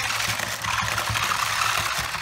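Kamigami Mantix and Scarrix toy robots running: their small electric motors whir and their plastic legs clatter rapidly on a wooden tabletop in a steady, rattling buzz.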